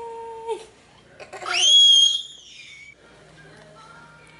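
A small child's voice holding a steady 'aah' that stops about half a second in, then a loud, high-pitched squeal that rises sharply, holds for about a second, and falls away.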